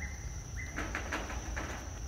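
Steady high-pitched insect drone, like crickets or cicadas, with a few short rustling noises about a second in.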